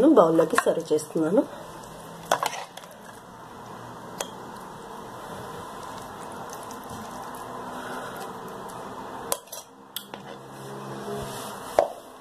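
A metal serving spoon clinking a few times against a steel pot and a glass serving bowl while food is spooned out, each clink short and separate, over a steady low background hiss.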